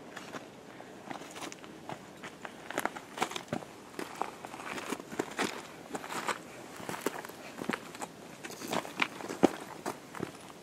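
Footsteps of several hikers crunching on loose stones and gravel of a rocky mountain trail, an irregular run of scuffs and crunches, the sharpest about nine and a half seconds in.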